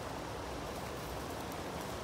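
Steady, even outdoor background noise, a faint hiss with no distinct events.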